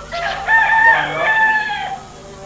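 A rooster crowing once, one long crow lasting nearly two seconds.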